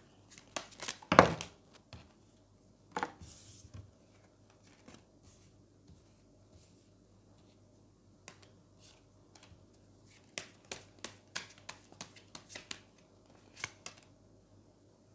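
Tarot cards being shuffled and laid down on a wooden table: a sharp slap about a second in, then scattered light taps and flicks, with a quicker run of clicks near the end as more cards go down.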